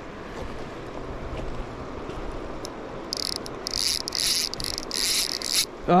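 Fishing reel's drag buzzing in several short runs starting about three seconds in, as a hooked steelhead pulls line off. A steady wash of river and wind runs underneath.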